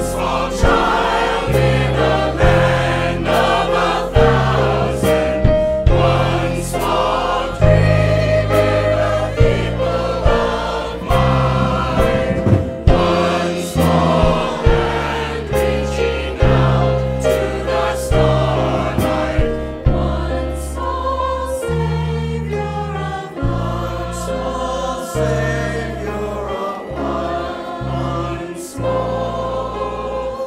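Mixed choir of men's and women's voices singing a song together over instrumental accompaniment with a steady bass line.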